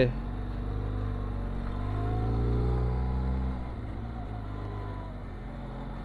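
Benelli TRK 502X motorcycle's parallel-twin engine pulling up a steep hill climb with a low rumble. Its revs rise for a couple of seconds and then ease off about three and a half seconds in.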